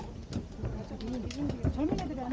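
Indistinct voices of people talking, with several footsteps knocking on wooden stair treads.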